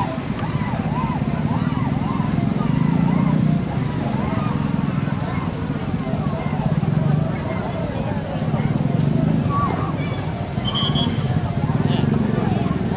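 Crowd of spectators talking and shouting over one another, with no single voice standing out. Beneath it a low rumble swells and fades every couple of seconds.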